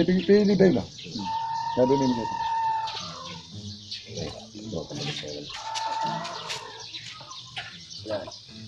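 Chickens calling in a farmyard, including one long drawn-out call lasting nearly two seconds, with low voices and a few light clicks as eggs are handled in trays.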